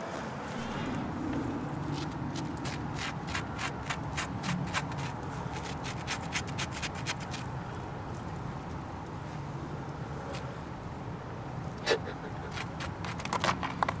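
A stick scraping dried salt off a salted squirrel pelt: a run of quick, scratchy strokes, thickest from about two to seven seconds in, with a few more near the end.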